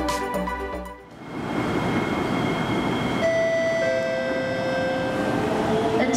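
Electronic background music ends about a second in, giving way to the running noise of a Singapore MRT North South Line train approaching an elevated station. From about three seconds in, steady tones from the train's electric traction step down in pitch and fade out near the end.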